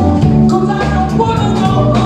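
Live pop-rock band playing, with a male lead singer over drums, bass guitar and keyboards.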